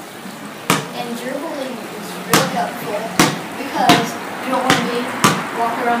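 A basketball dribbled on a concrete floor: six sharp bounces at uneven intervals, a second or less apart after the first.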